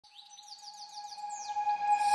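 Bird chirping, a fast run of short falling whistles, over one steady held tone, growing louder as the opening of a background music track.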